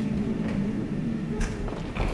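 Live acoustic song: steadily strummed acoustic guitar under long held vocal harmony notes, with no words sung.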